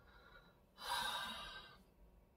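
A man sighing: one breathy exhale about a second long, starting a little before the middle and fading out.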